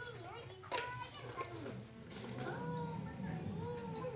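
Young children's voices chattering and squealing at play, high-pitched with rising and falling calls.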